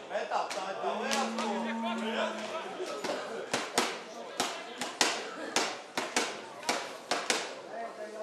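Voices shouting across a rugby pitch, one held call among them. About three and a half seconds in, sharp hand claps begin, roughly two a second.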